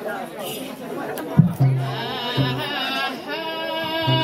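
Chatter, then a group of women singing a folk song together to booming beats on hand-held frame drums, which come in about a second and a half in.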